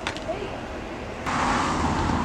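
Quiet outdoor background that, about a second in, steps abruptly up to a louder, steady rush of street traffic noise.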